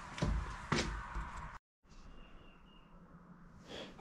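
Two dull thuds about half a second apart. Then the sound drops out and returns as faint garage room tone with a thin high whistle.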